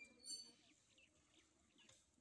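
Near silence, broken by one brief faint high chirp of a bird about a quarter second in.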